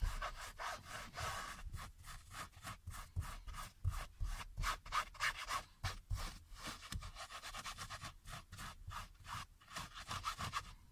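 Rubber-bristled brush scrubbing foam upholstery cleaner into a fabric car seat, in quick, even back-and-forth strokes. The foam is being brushed into the fibres to lift a stain.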